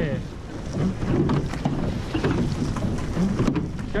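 Surf boat under oars at race pace: water rushing along the hull and wind buffeting the microphone make a loud low rumble that rises and falls.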